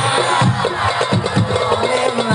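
Hadroh frame drums (rebana) playing a quick, busy rhythm of low thuds and sharper slaps, coming in right as a sung line ends.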